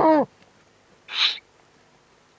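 Eurasian eagle-owl calls at the nest: a loud pitched call that drops in pitch and ends just after the start, then a short raspy hiss about a second later.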